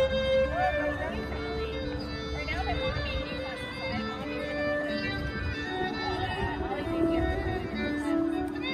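A street musician playing a slow melody of long held notes, with faint voices in the background.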